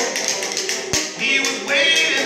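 Banjo playing with hand-slapped body percussion on chest and thighs, giving sharp slaps. A man's singing comes back in near the end.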